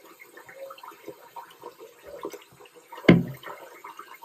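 Bathroom faucet running steadily into the sink, with a brief, louder thump about three seconds in.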